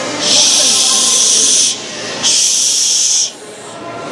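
Two loud, steady hisses, the first about a second and a half long and the second about a second, with a short gap between, over crowd murmur.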